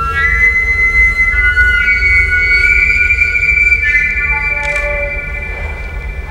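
Long wooden flute playing held high notes, with several tones sounding together in a slowly shifting cluster over a steady low hum.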